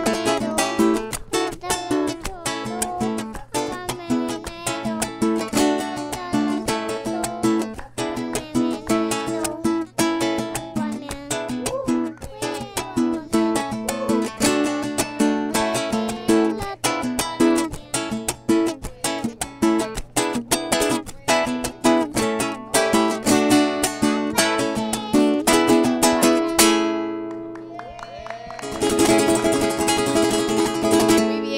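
Acoustic guitar strummed in a quick, steady rhythm of chords. Near the end the strumming stops and a chord rings out and fades, then the strumming starts again.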